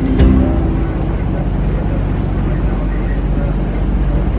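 A boat's engine running steadily under way, heard on board as a constant low rumble. Strummed guitar music cuts off just after the start.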